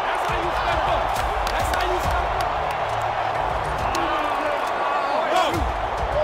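Steady stadium crowd noise with players' shouts on the sideline and background music mixed under them, from NFL mic'd-up game footage.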